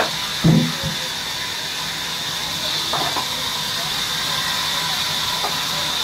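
Steady hiss of sawmill machinery running throughout, with a heavy thump about half a second in as the men handle the log, and short calls from the workers.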